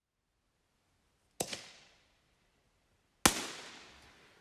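A 60-gram, 24-shot fireworks cake (Flamingo Bombs) firing shells that break with reports: two sharp bangs about two seconds apart, the second louder, each followed by a rolling echo that fades.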